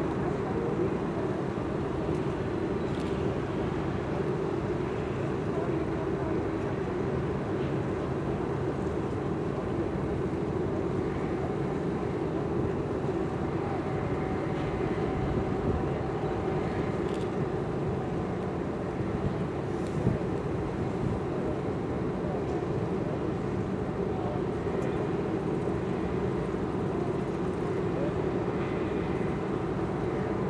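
Steady drone of a coastal passenger ship's machinery heard on deck, an even low hum with no change in level. A few faint ticks come through it, one sharper click about two-thirds of the way in.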